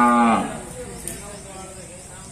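A single loud moo from cattle: one steady held call that drops in pitch as it cuts off shortly after the start.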